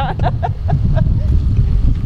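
Wind buffeting the microphone, a loud continuous low rumble, with a few short faint voice sounds in the first second.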